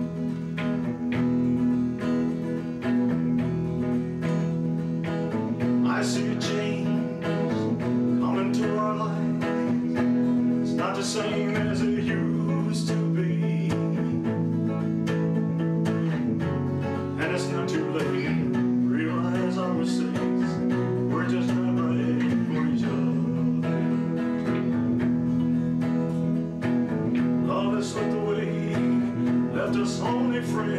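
Solo electric guitar playing a slow melody in E, single notes over sustained low chord tones.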